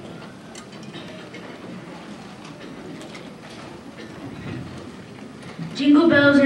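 Low murmur of many people talking quietly in a hall, with scattered light clicks and knocks of music stands and instruments being handled.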